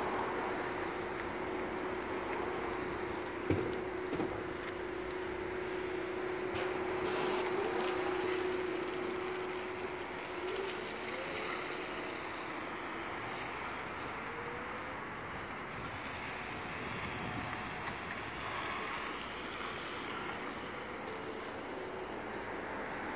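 Volvo battery-electric city bus pulling away from a stop and driving off: a steady electric hum over road noise that fades out about halfway through as the bus moves away, with one sharp knock early on.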